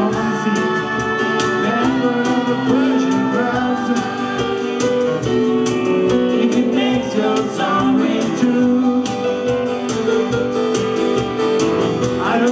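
Live song: a man singing, holding long notes, over a strummed hollow-body electric guitar playing a steady rhythm.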